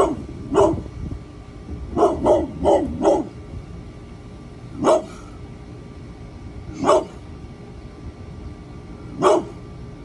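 An 11-year-old brindle pit bull barking, about nine short barks in all. Two come at the start, then a quick run of four, then single barks about two seconds apart. A steady low rumble runs underneath.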